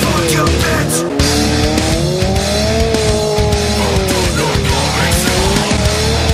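A small wreck-race car's engine revving hard, its pitch rising and falling repeatedly, under aggressive rock music with a steady beat.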